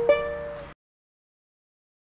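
A capoed ukulele strummed once on an E chord shape, ringing briefly. About three-quarters of a second in, the sound cuts off abruptly to dead silence.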